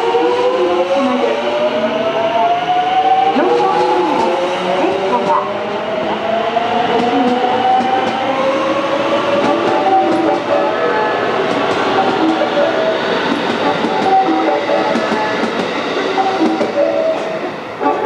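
JR West 207 series electric train pulling away: its traction motors whine, rising steadily in pitch for about the first nine seconds as it accelerates, then the steady running noise of the cars rolling past.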